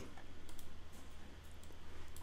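A few faint computer mouse clicks over a low steady hum.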